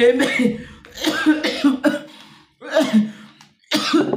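A man talking in short phrases with brief pauses between them.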